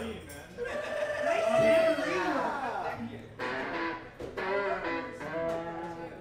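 Electric guitar played at a low level, with voices in the room.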